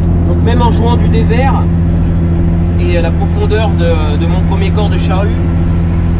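Massey Ferguson 8470 tractor's diesel engine heard from inside the cab, running at a steady pitch under load while pulling an eight-furrow mounted plough.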